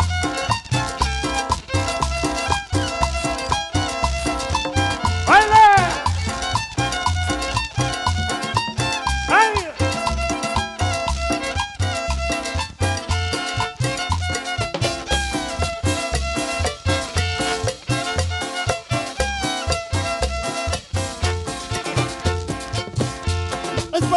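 Chanchona band playing an instrumental cumbia: violin melody over upright bass, guitar and drums, the bass notes pulsing on the beat. Two loud sliding notes stand out about five and nine seconds in.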